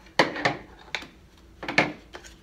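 Metal tire levers clinking as they are put down on a table, a few separate sharp clicks with the loudest near the end, while a rubber tire is worked off a wheel rim.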